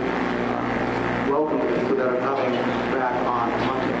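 A man's voice speaking indistinctly through the press-conference microphones, over a steady low hum.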